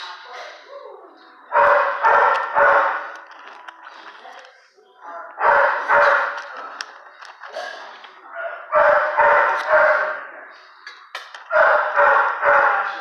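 Dog barking in short volleys of about three barks each, repeating every three to four seconds.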